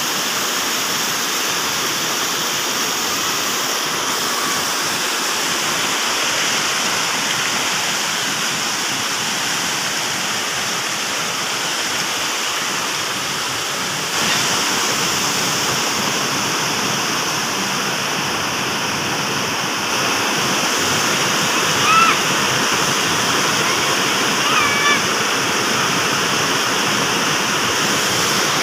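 Small waterfall pouring over rocks into a stream pool: a steady, unbroken rush of water, a little louder from about halfway through.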